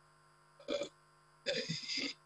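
A man's short hesitant 'uh' a little over half a second in, then a brief, sharp, gasp-like breath in near the end, with dead silence between the sounds.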